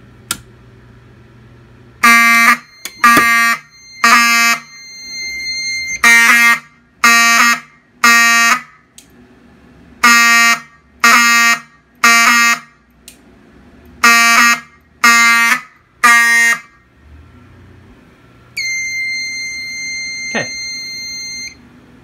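A single click from a manual fire alarm pull station, then fire alarm horns sounding the code-3 (temporal-three) pattern starting about two seconds in: four rounds of three half-second blasts, each round followed by a longer pause. Near the end a steady high-pitched tone sounds for about three seconds.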